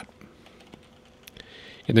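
A few faint computer keyboard key clicks, spaced apart in a quiet pause, as keys are pressed to step a forecast map forward.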